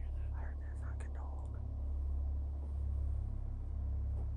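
A person whispering briefly in the first second and a half, over a steady low rumble.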